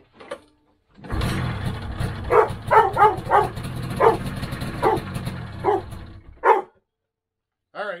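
A Polaris 600 Pro X two-stroke twin snowmobile engine fires on the pull and runs for about five seconds on the priming squirt of gas, then cuts out abruptly, not getting enough fuel to keep running. A dog barks about eight times over the engine, and the barks are the loudest sounds.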